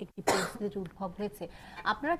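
Speech with a short cough about a quarter of a second in.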